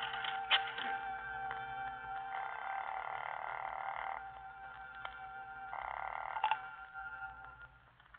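Bell telephone ringing twice, the second ring cut short, over a held note of music underscore.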